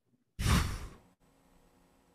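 A man's sigh: one breathy exhale into the microphone that starts abruptly and fades out within about a second.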